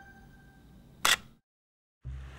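Logo sound effect: chime tones ringing out and fading, then a single camera-shutter click about a second in.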